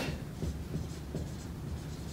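Dry-erase marker writing on a whiteboard: a few short, faint strokes of the felt tip.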